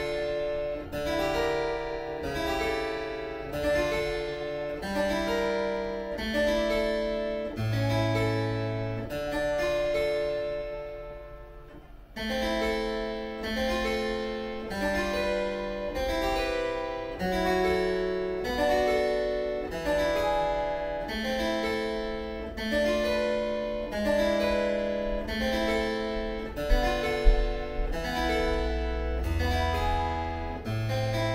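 Harpsichord at A440 pitch playing a figured-bass exercise on the seventh chord: a chord with its bass note struck about once a second. A little over a third of the way through one chord is left to die away before the chords resume, and two low knocks sound near the end.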